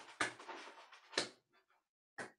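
Mostly quiet pause with two brief soft noises, one about a quarter second in and one about a second in, then near silence.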